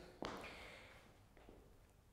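Near silence with one soft tap of a heeled dance shoe on the studio floor shortly after the start, fading out, and a fainter tick later on.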